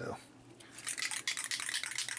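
An aerosol can of Testors Dullcoat clear coat being shaken, its mixing ball rattling rapidly inside. The rattling starts about half a second in.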